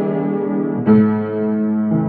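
Piano played in slow held chords, a new chord struck about a second in and another near the end, each left ringing.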